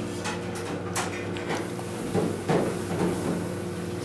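Metal chopsticks clicking lightly against dishes while eating, with a few short clicks about a second in.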